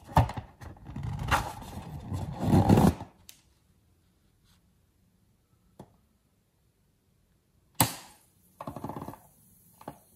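Hands rubbing and squeezing a latex balloon, with rubbery squeaks and rustling, for about three seconds. Near the end comes a sharp snip and a short rustle as scissors cut at the balloon.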